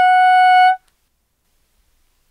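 Bb soprano saxophone playing one held note, G-sharp (A-flat) with the octave key, steady in pitch, cutting off about three quarters of a second in.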